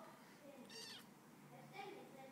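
A kitten mewing: a short, high-pitched mew just under a second in, and a briefer one near the end.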